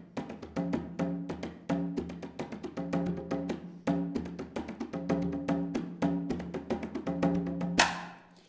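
Candombe piano drum, the largest and lowest-pitched of the three candombe drums, played with one stick and one bare hand. It plays a low, ringing rhythmic pattern that repeats about once a second and marks the accents on the first and fourth sixteenth notes. The drumming stops at the very end.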